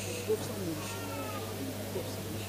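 Faint, wavering voices in the room over a steady low electrical hum, with one brief louder vocal sound about a third of a second in.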